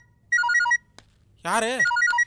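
Mobile phone ringtone playing: a looping melody of short electronic beeps, with a sung phrase of the tune about a second and a half in.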